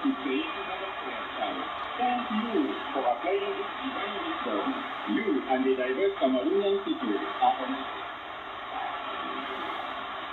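Speech from the WRMI shortwave broadcast on 5800 kHz, played through the small speaker of a Chinese clone of the Malahit DSP SDR receiver with its noise reduction switched on. The voice is thin and narrow-band over a steady background hiss, and it grows weaker over the last two seconds.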